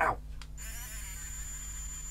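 3D printing pen's small filament-feed motor running steadily, pushing out old gold filament, with a thin high whine that comes in about half a second in.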